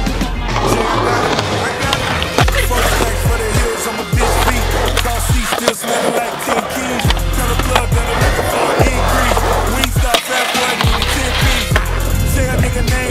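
A skateboard rolling on concrete with sharp clacks of the board, over hip hop music with a deep bass line.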